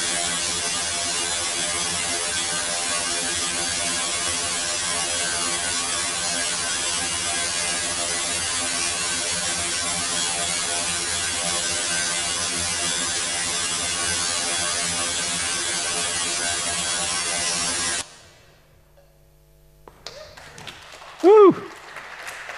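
Generative music sonifying the Rule 30 cellular automaton: a dense, steady drone of many held tones over a hissy wash, which cuts off suddenly about three-quarters of the way in. A short burst of voice comes near the end.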